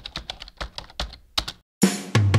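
Computer keyboard typing sound effect: a quick, irregular run of keystroke clicks that stops about one and a half seconds in. Near the end a loud drum hit starts the music.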